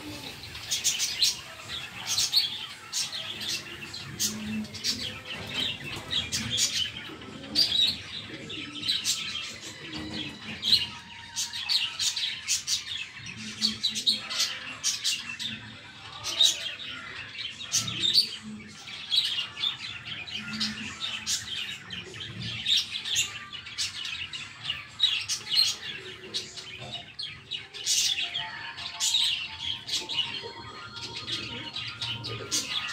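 Small birds chirping continually, in many short, high-pitched calls a few to the second.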